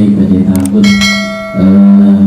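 A man's voice drawing out long held notes in a chanted reading over a microphone and PA. About a second in, a brief bright metallic ring sounds, like a small bell or a struck glass, and fades within half a second.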